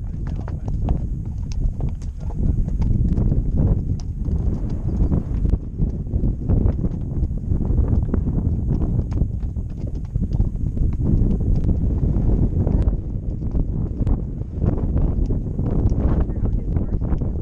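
Horse's hooves clopping steadily on a rough stony track, a quick irregular run of hard clicks, over a constant low rumble of wind on the microphone.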